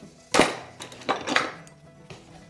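A sharp metallic clink about a third of a second in, then a few lighter clinks and knocks: a square wooden blank being seated and clamped in a metal four-jaw lathe chuck.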